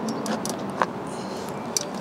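A few light clicks and knocks from the folded Minako F10 Pro electric fatbike as it is handled after folding, the sharpest about a second in, over steady outdoor background noise.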